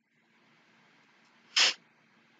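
A single short, sharp exhale of breath through a person's nose, about one and a half seconds in.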